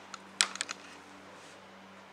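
A quick cluster of four or five light clicks about half a second in, then a faint steady low hum.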